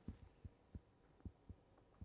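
Near silence, broken by about five faint, soft low thumps at uneven intervals.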